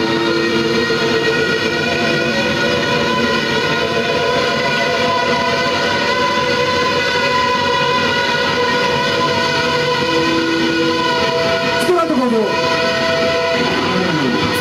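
Live punk band's distorted electric guitars and bass sounding long held notes in a loud, droning passage, with a downward pitch slide about twelve seconds in and another at the very end.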